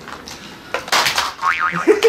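Cartoon-style comedy sound effect: a short boing-like tone whose pitch wobbles rapidly up and down for about half a second in the second half. A brief noisy sound comes just before it, about three quarters of a second in.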